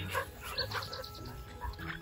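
A Belgian Malinois making a few faint, short sounds during heeling work, over soft background music with long held notes.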